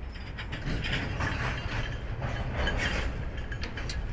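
Freight train cars rolling past with a low rumble and a run of rapid metallic clicking and clanking, densest through the middle.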